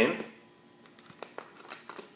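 Faint crinkles and small clicks of a thin plastic water bottle being gripped and its screw cap turned.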